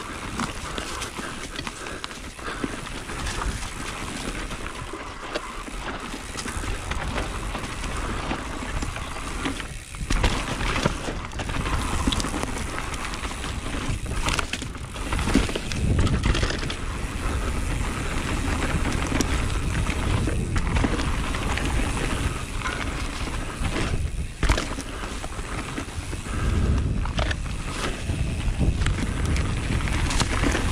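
Mountain bike ridden fast down a dirt woodland trail, heard from a camera on the bike: a steady rush of tyre and riding noise with scattered sharp knocks and clatters as the bike hits bumps.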